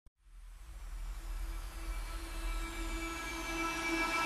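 Intro of an electronic dance track fading in: a held chord over a low bass drone, with a faint falling sweep high up, growing steadily louder.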